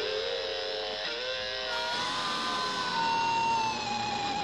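Live rock band music led by an electric guitar holding long sustained notes. A single long note comes in about halfway and bends slightly down near the end.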